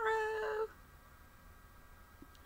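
A woman's voice holding a drawn-out vowel at one steady pitch, ending about two-thirds of a second in, then near silence with only room tone.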